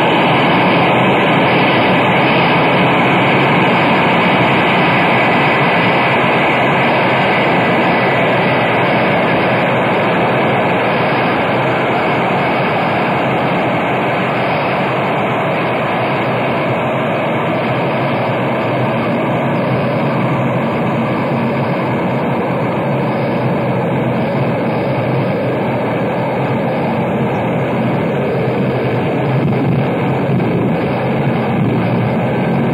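Live industrial noise music: a loud, unbroken wall of dense noise with steady hum tones running through it, taken straight off the mixing desk.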